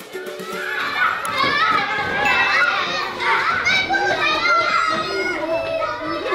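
A crowd of young schoolchildren shouting and calling out excitedly all at once, many high voices overlapping, swelling loud about a second in.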